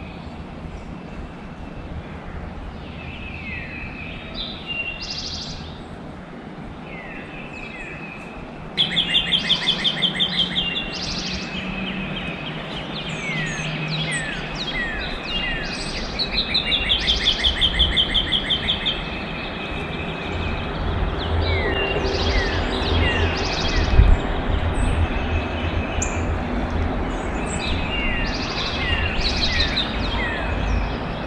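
Several songbirds singing and calling together: short repeated whistled notes and quick falling chirps, with a loud rapid trill about nine seconds in and another around seventeen seconds. A low rumble rises in the second half, with a single brief thump about three-quarters of the way through.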